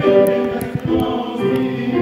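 Mixed choir singing sustained chords with chamber orchestra accompaniment, the harmony moving on every half second or so.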